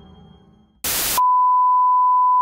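Music fades out, a short burst of static hiss follows, and then a steady, high-pitched test tone starts about a second in: the reference tone that goes with colour bars.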